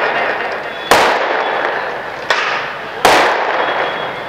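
Firecrackers going off: three sudden loud bangs, about a second in, just past two seconds and at three seconds, each fading out in a long echo.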